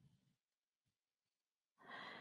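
Near silence with faint breathing: a soft breath fading out in the first half-second, and a louder breath near the end.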